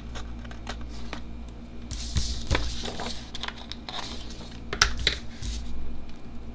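Small scissors snipping off the part of a paper sticker that overhangs the edge of a planner page: a run of light snips and clicks, with paper rustling as the page is handled.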